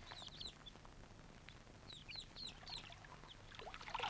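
Faint outdoor ambience of birds chirping: many short, high chirps scattered throughout, over a low background hum.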